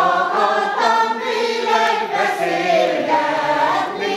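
A women's choir singing in harmony, one phrase sung on without a break, the notes shifting.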